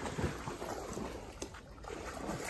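River water sloshing and lapping as a dog swims, under steady wind noise on the microphone.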